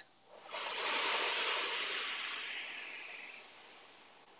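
A woman's long, slow, deliberate out-breath close to the microphone, a soft hiss that starts about half a second in and fades away over about three seconds.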